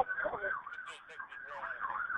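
Police car siren on a fast yelp: a rising-and-falling wail repeating about three times a second, dipping quieter in the middle.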